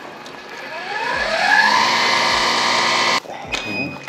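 Automatic alginate mixer's motor spinning up with a rising whine, running steadily, then cutting off suddenly a little after three seconds. A short electronic beep follows, the signal that the mixing cycle is done.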